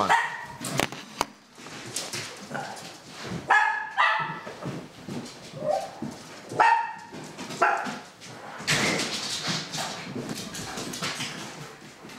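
A dog barking about five times, spread over a few seconds, followed by a stretch of rushing noise lasting a few seconds.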